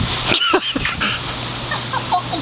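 A few short high-pitched squeals gliding up and down in pitch, over a steady rushing noise of wind and bubbling hot-tub water.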